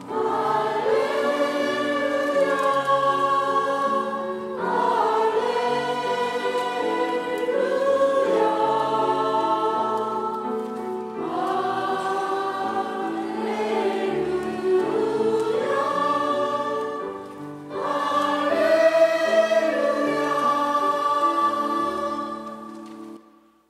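Church choir of mixed voices singing a slow sacred song in long, held phrases, the chords changing every few seconds.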